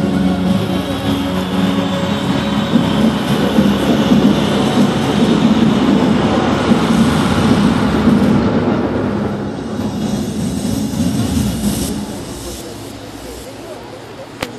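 Light-show soundtrack played over loudspeakers: held music tones give way to a loud, dense rushing swell that fades away over the last couple of seconds.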